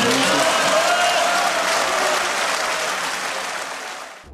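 Applause from a chamber full of parliamentary deputies, with a few voices calling out in the first seconds. It is loud at first, then slowly dies down.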